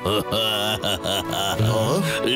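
Voice-acted cartoon crying: a loud, wavering wail that rises and falls in pitch, over background music.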